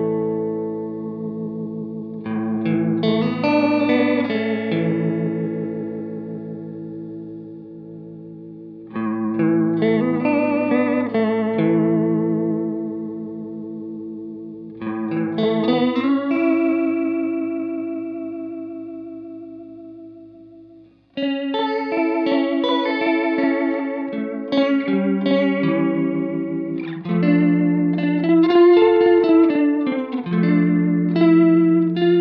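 Electric guitar played through a Mattoverse Electronics Inflection Point modulation pedal, its notes wavering under the modulation. Chords are struck about every six seconds and left to ring and fade, then the playing gets busier for the last third.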